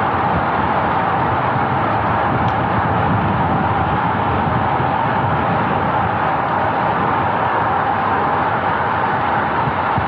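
Steady rush of wind on the microphone of a road bike riding fast at about 42 km/h, mixed with tyre noise on asphalt.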